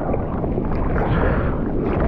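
Ocean water rushing and sloshing against a surfboard as it is paddled, with a few brief splashes, heard up close from a camera mounted on the board.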